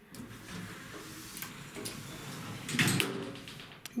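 Elevator's automatic sliding doors running closed, with a knock about three seconds in as they shut.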